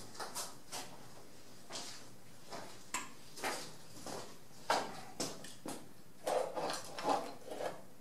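Oil painting brush working paint on the canvas and palette: a run of short, irregular scrubbing and tapping strokes, some sharper than others.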